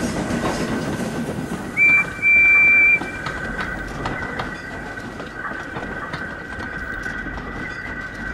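A steam locomotive whistle gives a short blast and then a longer one about two seconds in, over the steady rumble of a goods train rolling past with wheels clicking over the rail joints.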